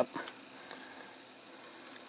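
Faint crinkles and small ticks of protective paper being picked and peeled off a clear acrylic clock-case panel, with a brief scratchy rasp near the end.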